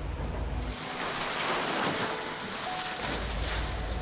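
Seawater rushing and splashing out of a hauled trawl net as the catch is emptied onto the deck: a steady hiss that swells for about two seconds. A low drone from the fishing boat's engine is heard at the start and again from about three seconds in.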